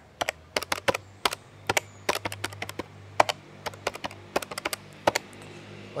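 Quick, irregular keyboard-like typing clicks, several a second, as numbers are keyed into a phone calculator, over a steady low hum.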